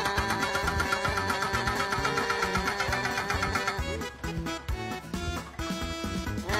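Background music with a steady beat, over a rapid, even hammering from a hydraulic breaker on a backhoe chiselling into asphalt.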